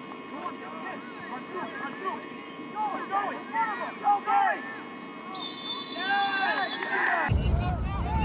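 Distant shouts and calls of players and people on the sideline across a soccer field, short and scattered, thicker around the middle. A low rumble comes in about seven seconds in.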